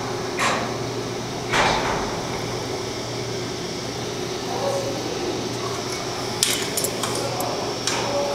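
Carrier Comfort Series central air-conditioner condensing unit running in cooling mode: a steady low hum with an even rush of air over it. Two short knocks come in the first two seconds, and a few clicks about six and a half seconds in.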